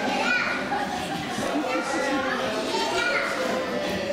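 A crowd of young children chattering and calling out over one another, without a break.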